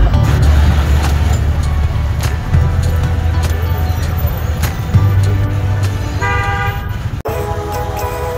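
Motorbike engines running at idle in a queue, with street clatter, and a single horn toot lasting nearly a second about six seconds in. Background music plays underneath.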